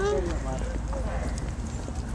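Footsteps on an asphalt parking lot, with indistinct voices and a low wind rumble on the microphone.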